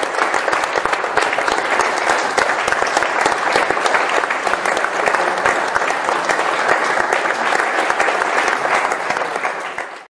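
Audience applauding, a steady dense patter of many hands clapping that fades out at the very end.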